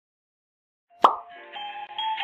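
A single plop sound effect about a second in, followed by the start of a short musical jingle of bright, sustained notes.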